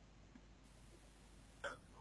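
Near silence: room tone, with one short vocal sound from the man near the end.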